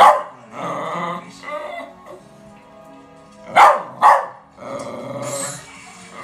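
West Highland white terrier barking at animals on a television: one sharp bark right at the start, then two quick barks about three and a half seconds in.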